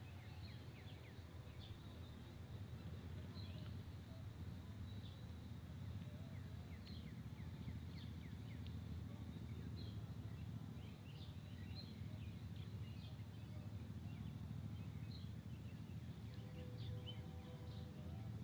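Faint outdoor ambience: small birds chirping at intervals over a low, steady rumble. A faint steady hum comes in near the end.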